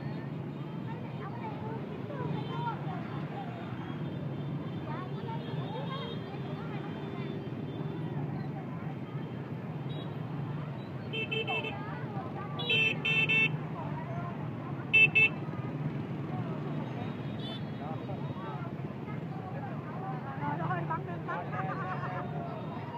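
Dense motorbike traffic crawling in a crowd: engines running and people's voices chattering, with a run of short horn beeps between about 11 and 15 seconds in, the loudest a double beep near 15 seconds.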